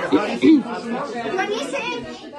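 Several people talking over one another in a room, with no one voice clear; one voice is louder about half a second in.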